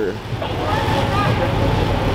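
Low, steady engine rumble of cars moving slowly on the street close by, among them a lifted Chevrolet Caprice donk on oversized wheels, with faint voices in the background.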